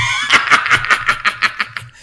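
Laughter in a fast run of short, even bursts lasting about a second and a half, breaking off just before speech resumes.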